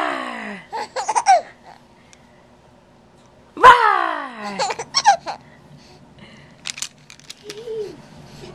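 Twice, an adult's playful 'rawr' falling in pitch, each followed by a baby's short bursts of giggling laughter, about 3.5 s apart. A faint low coo from the baby comes near the end.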